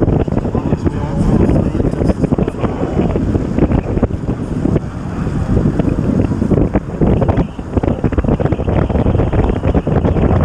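Wind buffeting the microphone of a camera mounted on a track bicycle riding at about 28 mph, a loud, rough rushing that swells and dips.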